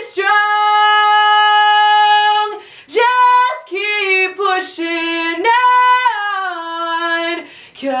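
A young woman's solo voice singing unaccompanied. She holds one long steady note for about two and a half seconds, then sings a string of shorter phrases that rise and fall in pitch.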